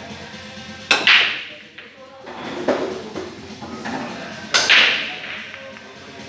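Break shot at pool: a sharp crack of the cue tip on the cue ball, then the racked balls scattering with a clatter about a second in. Another loud clack of balls colliding comes about four and a half seconds in, over background music.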